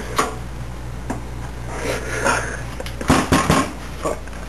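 Sheet-metal computer case knocking and rattling as hands press a motherboard into it: a few scattered clicks, then a quick cluster of sharp knocks about three seconds in.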